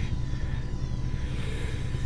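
A steady low rumbling hum with a faint steady high tone above it.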